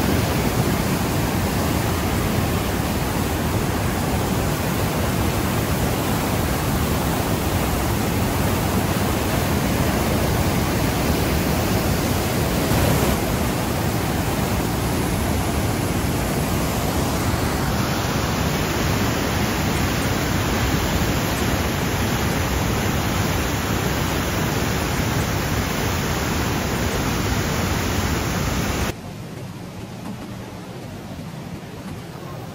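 Huka Falls on the Waikato River: a loud, steady rush of white water pouring through the narrow rock chasm. It cuts off suddenly about a second before the end, leaving a much quieter outdoor background.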